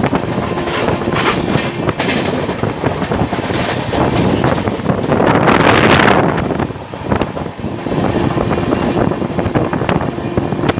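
Express train running at speed, heard from its open doorway: wheels clattering over the rails with wind rushing past, swelling loudest about five to six seconds in before briefly easing.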